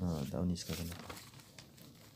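A voice speaking briefly in the first second, with a crinkly rustle of handling noise over the end of it, then only faint ticks.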